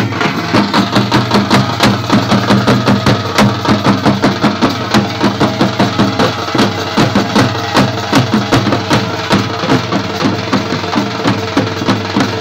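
Folk drum ensemble playing a fast, even bhawaiya-style beat: hand- and stick-struck barrel drums with a small metal shaker, about three to four strokes a second, over a sustained melody line.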